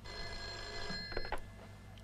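Telephone bell ringing once, a single ring lasting a little over a second, followed by a couple of quick clicks.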